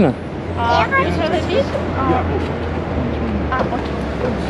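Scattered indistinct voices over a steady low road rumble.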